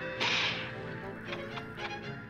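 Cartoon soundtrack from a television: music, with a sharp whip-like swish about a quarter of a second in.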